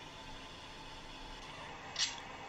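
Faint steady hiss from an iPhone speaker playing back a slowed-down video, with a short sharp scrape at the very end as the disposable lighter's flint wheel is struck on screen.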